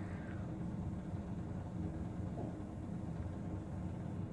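Low, steady background hum of room noise with no distinct event.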